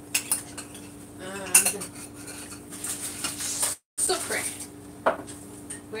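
Dishes and cutlery clinking and knocking in a kitchen: a scatter of separate sharp knocks over a steady faint hum, with the sound cutting out completely for a moment just before four seconds in.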